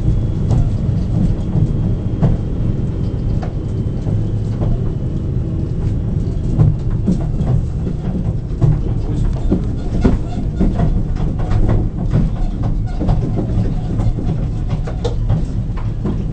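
Steady low rumble of a moving tour vehicle heard from on board, with frequent small rattles and knocks from the carriage.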